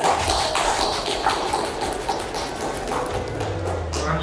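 A group of people clapping their hands, a dense patter of claps over background music.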